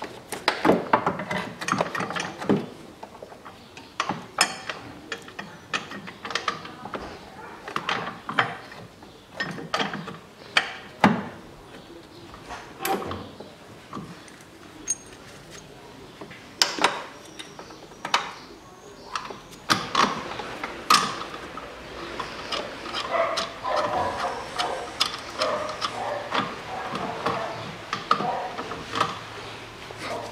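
Hand ratchet clicking and metal tools clinking in irregular bursts while bolts are run in on an engine mount bracket, the clicks growing denser in the second half.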